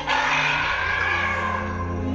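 A dinosaur puppet's loud cry played as a sound effect, starting suddenly and falling in pitch over about a second and a half, over the show's background music.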